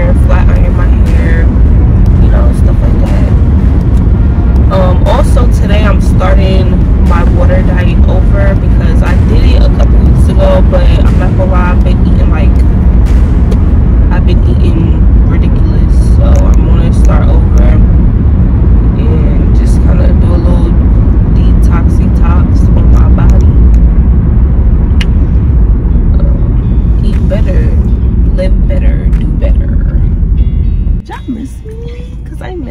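Car driving, heard inside the cabin: a loud, steady low road rumble, with a woman's voice talking over it.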